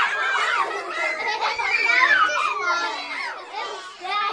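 A group of young children squealing and laughing together, many high voices overlapping, excited at being misted with a water spray bottle during the story's rain scene.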